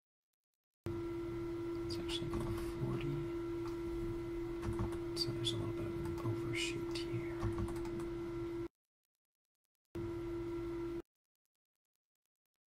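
Computer keyboard and mouse clicks over a steady electrical hum. The sound cuts in about a second in, stops abruptly near nine seconds, and returns briefly about a second later, as a microphone noise gate opens and closes.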